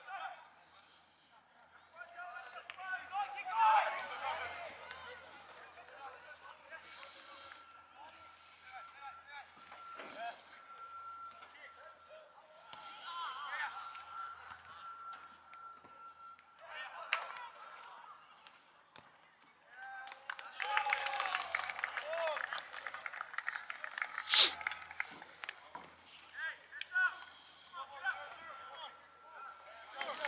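Players and spectators calling out across a soccer field, the voices too distant to make out, with a louder stretch of shouting about two-thirds of the way through. A single sharp knock sounds in the middle of that shouting.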